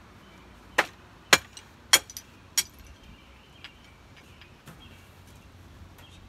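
Metal tools knocking together as they are handled in a pile of tools and scrap wood: four sharp, ringing metallic clanks about half a second apart, then a few lighter knocks.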